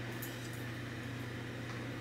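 Quiet room tone with a steady low hum and no distinct sound event.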